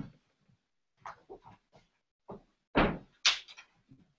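A wooden door being handled: a scatter of soft knocks and clatters, with two louder thuds close together a little under three seconds in.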